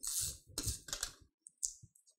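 Handheld adhesive tape runner rolled across the back of a paper card in about three short strokes, followed by a brief high hiss near the end.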